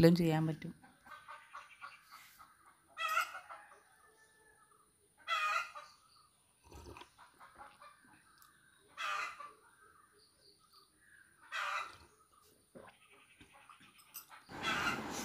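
Four short animal calls, each under a second and a few seconds apart, over faint background sound.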